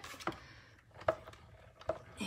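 Hand-cranked die-cutting and embossing machine turned slowly, a few faint clicks as the plates with a metal die and cardstock feed through the rollers.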